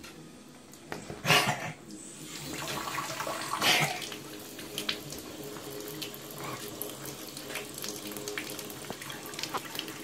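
Bathtub tap running, a thin stream of water pouring into the empty tub, with the flow getting louder about two and a half seconds in. Two brief louder noises come about one and nearly four seconds in.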